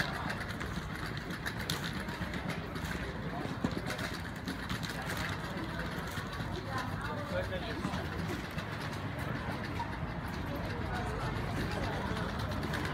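Night street ambience: indistinct voices of people nearby over a steady low rumble of traffic, with one sharp click a little under four seconds in.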